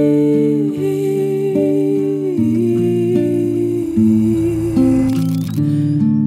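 Music: a slow passage with a long held wordless note that slides down in steps over sustained chords. A brief rising sweep comes near the end.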